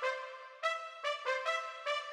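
Trumpet melody in a UK drill beat's intro, played as short separate notes, about six in two seconds, each fading away quickly, with no drums or bass underneath.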